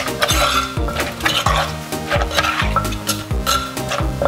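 Metal spoon clinking and scraping against an earthenware mortar while green papaya salad is tossed with a wooden pestle, with short clicks throughout. Background music with a steady beat plays under it.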